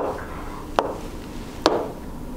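Pen tapping against the glass of an interactive whiteboard screen while writing: three sharp taps a little under a second apart.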